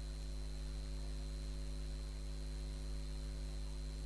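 Steady electrical mains hum with a stack of evenly spaced overtones, under a faint hiss and a thin, high steady whine. Nothing else happens.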